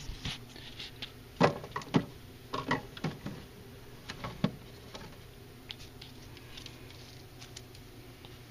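Knocks and light rattles from things being handled and set down on a small refrigerator's wire shelf, a cluster of sharp clicks in the first half, then only faint scattered ticks over a low steady hum.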